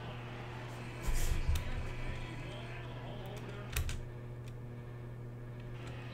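Quiet room tone with a steady low hum, a short muffled bump about a second in, and a few scattered soft clicks.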